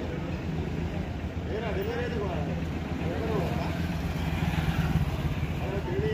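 Small goods carrier's engine idling steadily, with men's voices talking over it.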